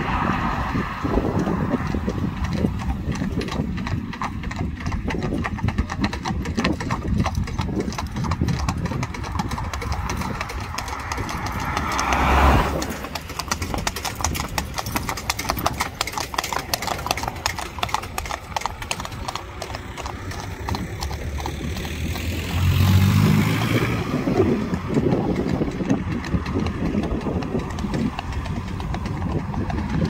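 Hooves of a pair of Friesian horses trotting on asphalt, a steady, fast clip-clop. A car swishes past about twelve seconds in, and a louder vehicle engine goes by about two-thirds of the way through.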